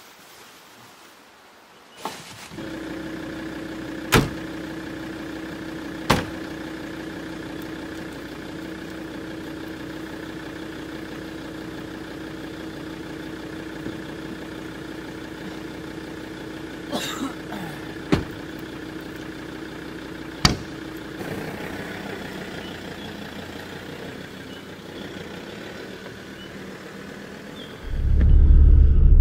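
Ford Ranger ute's engine idling steadily, with several sharp slams of doors or the rear canopy being shut over it.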